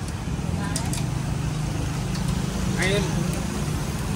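Busy street background dominated by a motor vehicle engine's steady low hum, which swells through the middle, with a brief voice about three seconds in.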